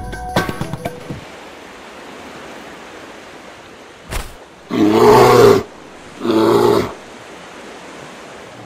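The percussive tail of a short intro jingle ends in the first second. About four seconds in, a brief burst is followed by two loud, drawn-out, voice-like cries, each under a second long, from the soundtrack of an animated TV commercial.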